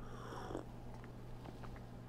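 A faint sip of coffee from a ceramic stein in the first half second, then quiet, over a low steady hum.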